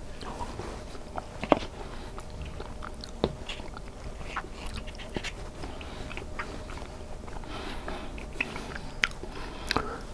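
Close-miked chewing and mouth sounds of a man eating soft mac and cheese with a fork, with scattered sharp clicks throughout, the loudest about one and a half seconds in and again near the end.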